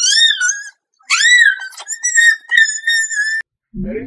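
Two high-pitched cries: a short one, then a longer one that rises and then holds steady for over two seconds.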